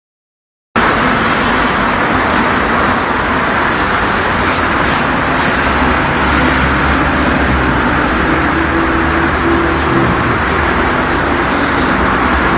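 Loud, steady background noise with a low hum underneath and a few faint clicks, starting suddenly just under a second in.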